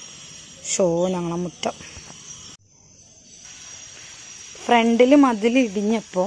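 Steady high insect chirring with a woman's voice over it; the chirring drops out for a moment about two and a half seconds in, then carries on.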